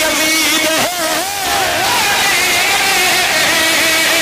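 A man's voice chanting a qaseeda into a microphone in long held notes with a wavering pitch, with a brief break about a second in.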